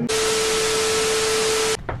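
Loud static-like hiss with a steady hum-like tone running through it, an edited-in sound effect that cuts in and out abruptly after about a second and three-quarters.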